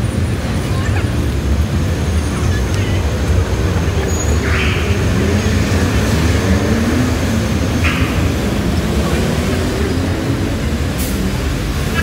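Busy city street traffic, a steady low rumble of passing vehicles, with passers-by's voices faintly in the mix. Two short hisses cut in, about four and a half and eight seconds in.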